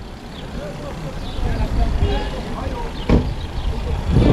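Wind and riding rumble on the microphone of a camera mounted on a bicycle rolling over stone paving, with road traffic behind it. A single sharp knock comes about three seconds in.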